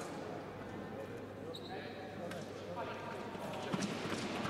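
Indistinct voices and footfalls on the fencing piste, echoing in a large sports hall, with a few short sharp clicks.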